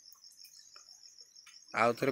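Faint, steady high-pitched trill of insects in the background, pulsing evenly without a break. A man's voice comes in near the end.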